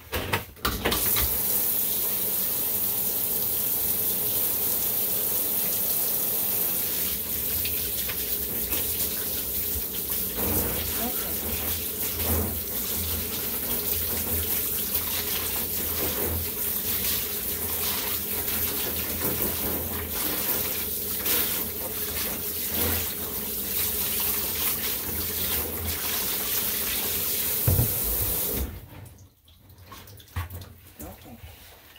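Water running steadily from the tap of a dog-grooming tub, turned on about a second in and shut off shortly before the end.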